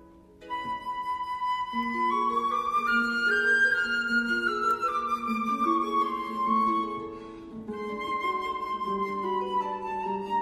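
Flute and harp playing a classical duet. The flute enters about half a second in with a long note, climbs and falls back, over lower harp notes. It breaks off briefly near the seventh second, then goes on.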